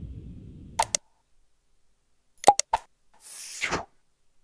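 Mouse-click sound effects from an animated subscribe-button end card: a sharp double click a little under a second in, then two more clicks about two and a half seconds in, followed by a short whoosh near the end as the buttons disappear. A low rumble fades out in the first second.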